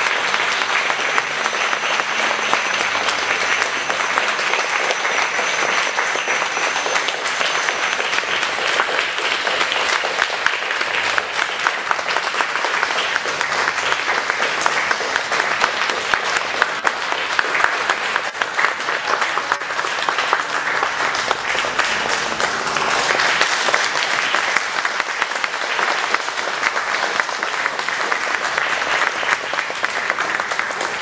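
A congregation applauding, sustained clapping from many hands called for to congratulate a newly married couple.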